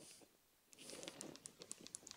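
Near silence: room tone with a few faint soft clicks and light rustling in the second half.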